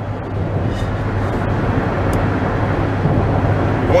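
Steady road and engine noise inside a moving SUV's cabin: a low hum under an even rushing sound.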